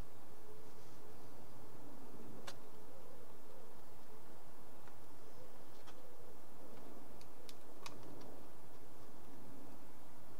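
Steady background hiss with a few faint, sharp clicks from fingers pressing and pinning a foam-board model as its glued side is adjusted.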